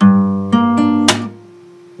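Nylon-string classical guitar fingerpicked on a G minor chord: a bass note on the sixth string, then two higher notes plucked, then a sharp percussive slap of the right hand on the bass strings about a second in. After the slap the sound drops to a faint ring.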